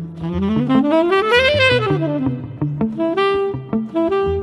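Jazz quintet recording: the tenor saxophone sweeps up in a run and back down, then holds a single note near the end, over bass and drums.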